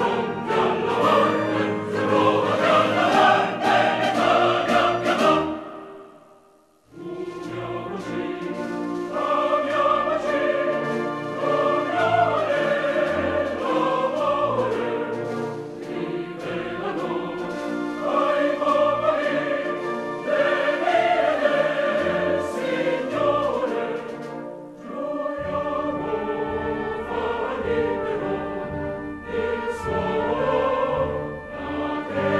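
Background classical music with orchestra and choral singing. It fades out about six seconds in, and the music starts again abruptly about a second later.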